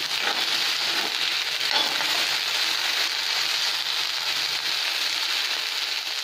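Chopped okra frying in hot oil in a kadai: a steady sizzle.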